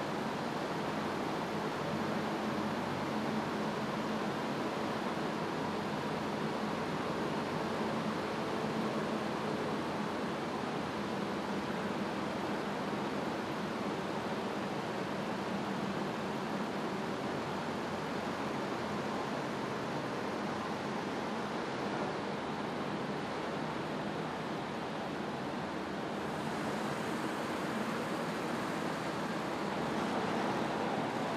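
Steady noise of heavy tractor-trailer trucks driving slowly past, their engines and tyres running evenly, with a faint low hum under it.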